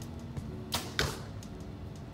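An arrow pulled up out of a ground-quiver tube: one short swishing scrape about three quarters of a second in, over background music.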